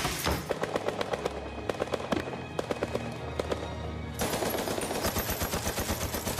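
Rapid gunfire, about six shots a second in quick runs, with music underneath; about four seconds in the firing becomes denser.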